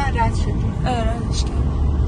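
Steady low rumble of a car in motion heard from inside the cabin, with road and engine noise and two short bits of voice near the start and about a second in.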